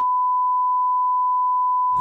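Censor bleep: one steady, pure, high beep that blanks out everything else, editing out speech for about two seconds.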